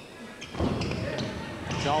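Basketball play on a wooden gym court: a heavy thud about half a second in that rings on in the hall, followed by a few sharper knocks of the ball.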